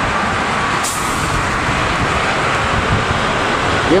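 Steady tyre and engine noise of highway traffic passing close by, with a brief high hiss about a second in.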